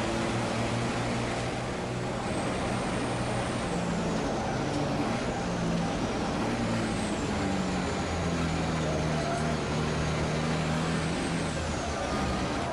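A racing truck's engine heard from inside its cab, running hard and steadily, its pitch stepping up and down. A faint high whine rises and falls above it.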